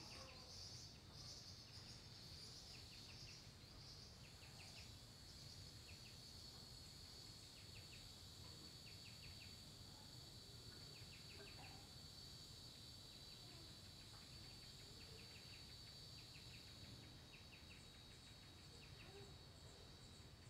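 Near silence: faint outdoor ambience with a steady high insect drone, and brief chirps recurring every second or two.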